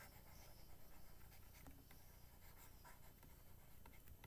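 Near silence, with faint scattered scratches and taps of a stylus writing on a pen tablet.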